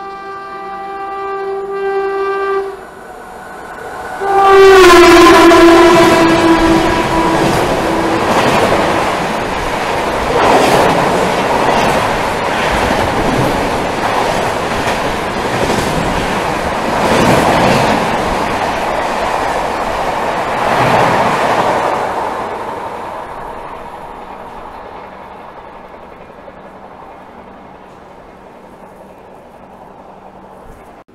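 Electric locomotive's horn sounding as an express train approaches at speed: one blast, then a second, longer blast whose pitch drops as the locomotive passes. After that the coaches rush by with a loud wheel clatter over the rail joints, then fade away as the train recedes.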